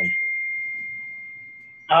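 A single steady high-pitched ringing tone, fading slowly away over about two seconds.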